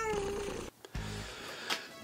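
A domestic cat meows once: a single drawn-out call with a slightly falling pitch that ends about half a second in.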